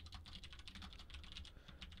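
Typing on a computer keyboard: a quick, faint run of keystrokes as a line of code is entered.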